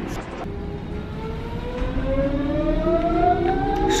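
Electric train's traction motors whining as the train accelerates, several tones climbing together steadily in pitch and levelling off near the end, over a low running rumble.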